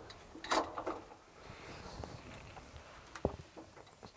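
Quiet handling noises inside a tank turret: a short rustle about half a second in and a single sharp metallic knock about three seconds in.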